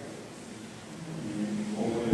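A brief pause in a man's lecture: low room noise in a large hall, with his voice faintly starting up again near the end.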